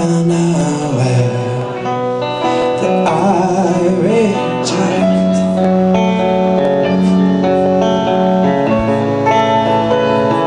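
Live band song: a hollow-body electric guitar strummed over keyboard chords, with a voice singing a wavering line about three seconds in. From about five seconds in, held chords ring out steadily.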